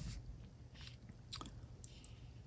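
A few faint, light scratchy ticks of a watercolour brush's bristles touching the paper, the clearest about a second and a half in, over a low steady room hum.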